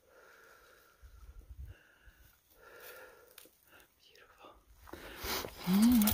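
A hiker's heavy breathing while climbing uphill: several faint, short breaths. From about five seconds in comes a louder rustle of movement, and her voice starts near the end.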